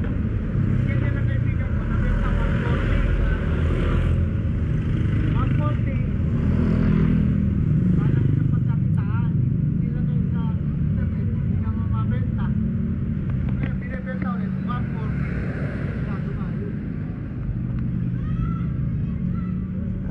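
A motor vehicle engine running steadily at a low idle, with voices talking in the background.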